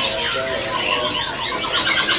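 Several caged songbirds chirping and singing at once, loud, with overlapping runs of quick repeated notes and short whistled glides.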